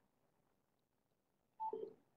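Near silence on a telephone conference line, then a single short telephone tone about one and a half seconds in.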